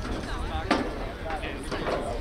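Distant voices of players and spectators across an open soccer field, with a low wind rumble on the microphone and two short sharp knocks, about a second apart.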